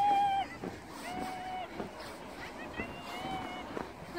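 A young girl crying out in three short, high cries, the first the loudest, after a spill off her sled into the snow.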